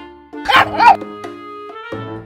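A dog barks twice in quick succession, over background music.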